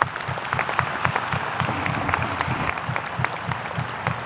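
Stadium crowd applauding steadily, many hands clapping at once, with the players on the pitch clapping along.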